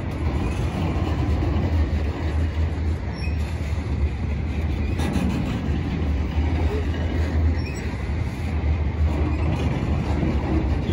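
Intermodal freight train of loaded well cars rolling slowly past under a speed restriction. Its wheels run on the rails with a steady rumble.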